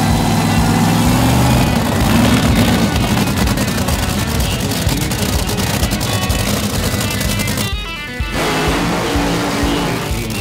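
Background music mixed with the loud, rapid rattle of a running Top Fuel dragster's supercharged nitromethane V8. The sound dips briefly about eight seconds in.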